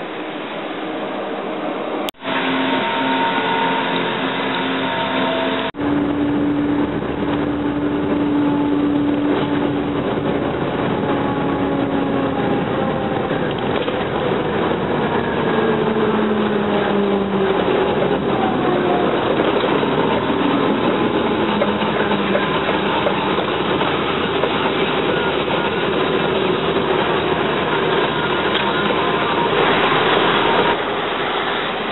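Heavy diesel truck (a DAF tractor unit pulling a silo tanker) driving at speed, heard from a microphone on top of the tank, with wind and road noise. The engine tones shift and glide in pitch as it pulls through the gears, with two short dips in the sound in the first six seconds.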